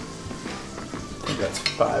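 Butter sizzling in a hot cast iron skillet, with a metal measuring spoon scraping and clicking as tablespoons of flour are scooped into a small ceramic ramekin.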